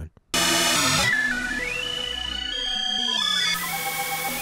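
Native Instruments FM8 software synthesizer playing a sequenced FM patch that starts suddenly a moment in. Its notes step up and then down in pitch. The sound is morphed across four presets, with the morph's randomizing particles turned up.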